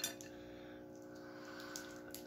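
A sharp crack right at the start and a few faint clicks later: crawfish shell being broken open by hand to pick out the claw meat, over a steady low hum.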